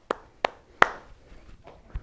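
A man clapping his hands slowly: three sharp claps about a third of a second apart, fading out, then a soft low thump near the end.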